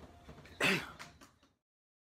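A man's single short vocal noise, like a throat-clear or grunt, about two-thirds of a second in. The sound then cuts off to dead silence about a second and a half in.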